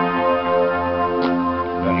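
Music from a pair of home-stereo tower loudspeakers: steady, sustained chords held through without a break.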